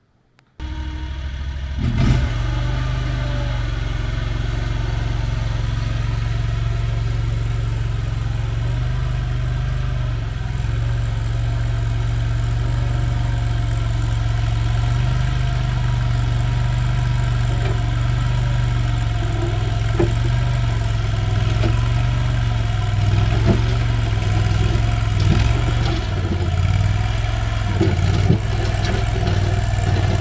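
AGT CRT23 mini skid steer's engine running steadily as the tracked machine drives, its pitch shifting a little with the throttle. It starts about half a second in, and a few short knocks sound over it.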